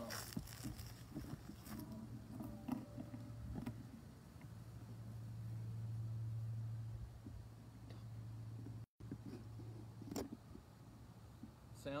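A low steady hum that swells for a couple of seconds in the middle, with scattered light clicks and knocks, and a brief cut-out in the sound about nine seconds in.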